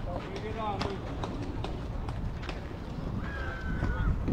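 Ballfield ambience: distant players' voices and calls, including one drawn-out call near the end, over a steady low wind rumble on the microphone, with a few sharp clicks scattered through.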